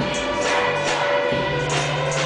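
Children's choir singing a traditional song, accompanied by drums and hand percussion.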